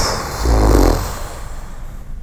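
A person's sharp breath out through the nose, followed about half a second in by a low, buzzy hum lasting about half a second, like a thinking 'hmm'.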